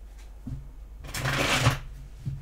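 A tarot deck being shuffled by hand: a short burst of rustling cards about a second in, lasting well under a second, with a couple of soft low knocks around it.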